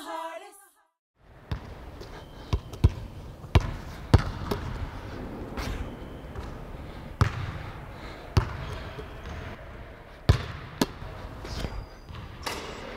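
Basketball bouncing on a hardwood gym floor: about a dozen irregularly spaced thuds starting a second and a half in, echoing in a large, empty gymnasium.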